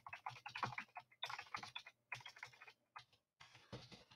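Computer keyboard being typed on: faint, quick runs of key clicks with short pauses between them.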